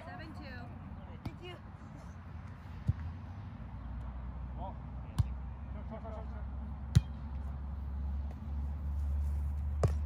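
A volleyball being struck by players' hands and forearms during a rally: four sharp hits, the loudest about seven seconds in. Faint players' voices and a low rumble run underneath.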